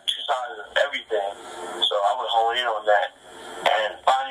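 Speech: a person talking in a thin, narrow voice like a phone call or radio broadcast, with no music under it.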